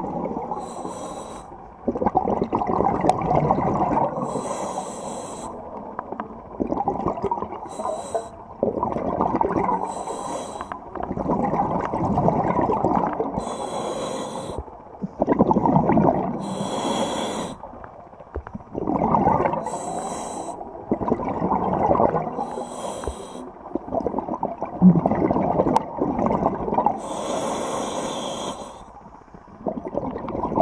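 Scuba diver breathing through a regulator underwater: a short hiss on each inhalation, then a longer rush of exhaled bubbles, repeating about every three seconds.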